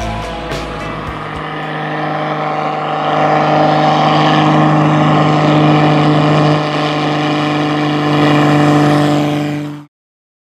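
Pitts Special biplane's engine and propeller running at high power during a low pass over the runway: a steady drone that grows louder over the first few seconds, then holds. It cuts off abruptly near the end.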